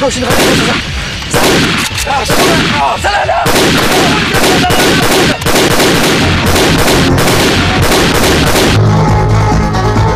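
Rapid, repeated gunfire sound effects from a film soundtrack, laid over background music; the shooting stops abruptly about nine seconds in and the music carries on.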